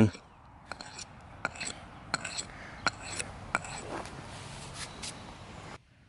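Steel spine of a Ka-Bar Becker BK2 knife scraped back and forth against a rock in quick repeated strokes, about three every two seconds, to grind off the factory coating so that it will strike sparks from a ferro rod. The scraping stops just before the end.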